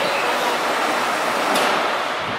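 Platform screen doors and the doors of a Tokyu 5050 series train sliding shut over a steady station hiss, with a clunk about one and a half seconds in.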